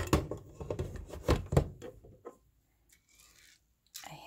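A quick run of knocks and clatters over the first two seconds: a plastic rice paddle and the rice cooker's nonstick inner pot being handled, with rice and water in the pot. Then it falls quiet.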